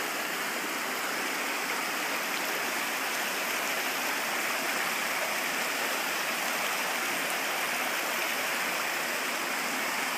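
Rocky mountain stream rushing over and between stones, a steady, even rush of water.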